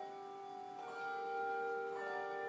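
Handbell choir ringing a slow piece: a chord of bells rings on and fades, then a new chord is struck about a second in and sustains.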